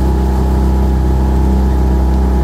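Outboard motor of a coaching launch running steadily at low, even speed, a constant low engine hum.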